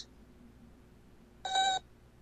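A single short electronic beep from a cartoon robot's beeping voice, lasting about a third of a second, about one and a half seconds in.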